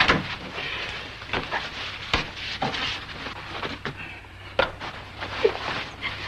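Scattered footsteps and knocks of people moving about a room, with a sharp thump at the start and another about two seconds in.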